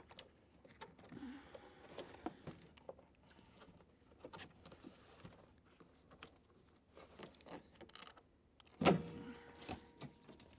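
Faint clicks and rustling of plastic trim being handled as the push-twist plastic rivets and the plastic radiator surround on a Porsche 996's nose are worked loose by hand. A louder knock comes about nine seconds in, with another just before the end.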